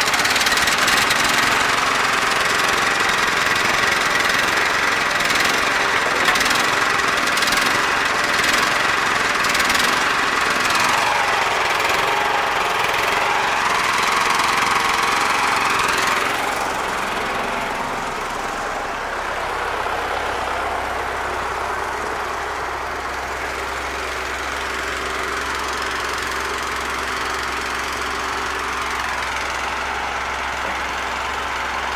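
ZIL-5301 'Bychok' tow truck's diesel engine running, with a loud hydraulic whine over it for about sixteen seconds, its pitch dipping briefly near the middle, while the platform hydraulics are worked. The whine cuts off suddenly and the engine idles on more quietly.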